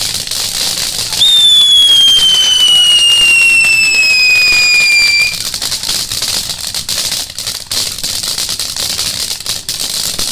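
Ground fountain firework spraying sparks with a continuous crackling hiss. About a second in, a loud whistle starts high and slowly falls in pitch for about four seconds, then stops.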